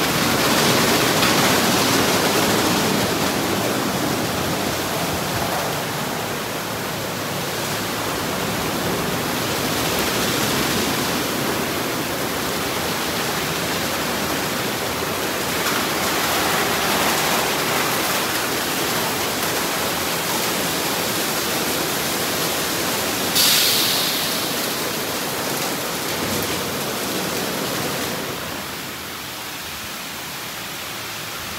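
Ryko SoftGloss Maxx 5 soft-touch automatic car wash running: a steady rushing hiss of water spray and spinning cloth brushes scrubbing a foam-covered vehicle. A brief, louder sharp hiss of spray comes about three-quarters of the way through, and the noise drops near the end.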